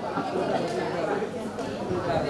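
Indistinct chatter of many voices, low and unclear, with no single voice standing out.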